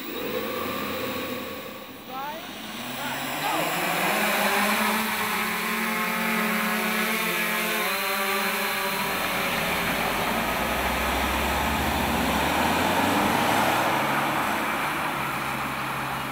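Electric eight-rotor multicopter camera drone spinning up and flying. Its motors' whine rises about two seconds in, then holds as a steady hum of several tones, which turns rougher with a low rumble from about nine seconds.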